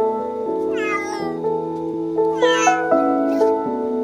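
A cat meows twice, two high calls that each fall in pitch and last under a second, about a second and a half apart. Soft piano music plays underneath.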